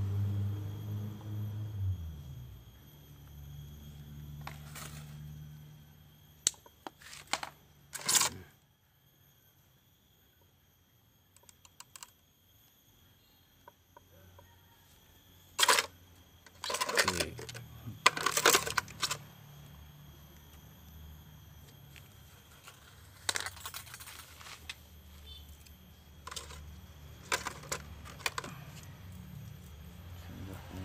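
Bonsai training wire being handled and bent around the branches of a ficus bonsai: scattered clicks, scrapes and short rattling clusters of wire. A low hum fades over the first two seconds and continues faintly underneath.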